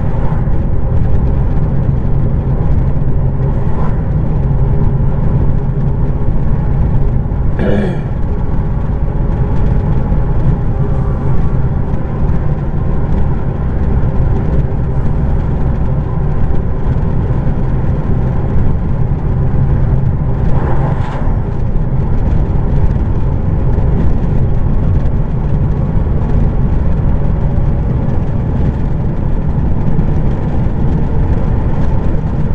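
Heavy truck's diesel engine running steadily with tyre and road noise, heard from inside the cab at highway speed. Two passing vehicles sweep by briefly, about eight seconds in and again about twenty-one seconds in.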